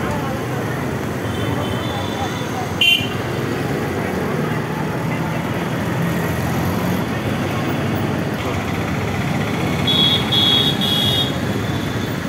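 Busy street din of slow motor traffic and a crowd's voices, with a short vehicle horn toot about three seconds in and a quick run of horn beeps near the end.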